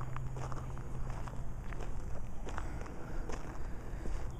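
Footsteps on gravel, irregular steps scuffing the loose stones.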